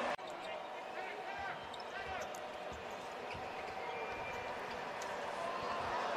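Basketball court sounds in an arena: a ball bouncing on the hardwood and a few short sneaker squeaks about one and two seconds in, over a steady background hum.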